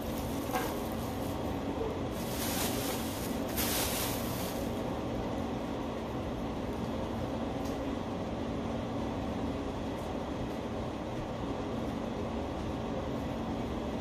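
A steady low machine hum over a low rumble, with a few brief bursts of hiss in the first few seconds.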